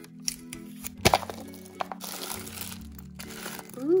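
Clear plastic LOL Surprise Glitter Globe ball being pulled open: a sharp crack about a second in as the shell comes apart, then crinkling of plastic and tissue wrapping, over background music.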